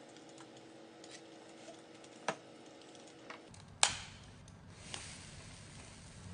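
A few light clicks, then one sharp loud click about four seconds in as the foam held on a gloved hand is set alight, followed by a low steady rumble of the flame burning that grows stronger near the end.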